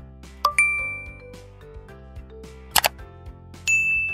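Two bright chime dings, one about half a second in and one near the end, each fading over about a second, with a quick double click between them, over faint background music.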